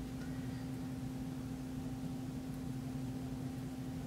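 Steady low hum with faint hiss: room background, with no distinct sound from the hand pressing the paper towel.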